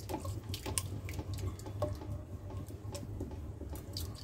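Silicone spatula stirring a thick, wet masala and yogurt mixture in a stainless steel pot: irregular soft wet squelches and light clicks, over a steady low hum.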